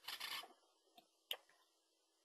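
Mostly near silence: a short, soft rustling noise at the very start and a single faint click about a second and a quarter in.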